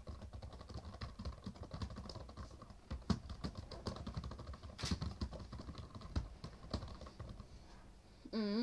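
Typing on a laptop keyboard: a quick, uneven run of key clicks, with a few harder keystrokes about three and five seconds in.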